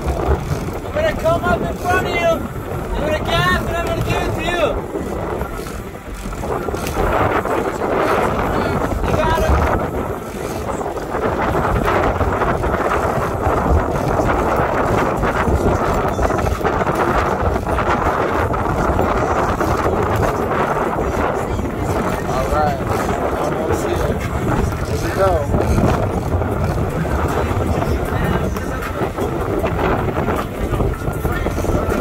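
Wind buffeting the microphone over the steady running noise of a sportfishing boat at sea, with indistinct voices in the first few seconds and again near the end.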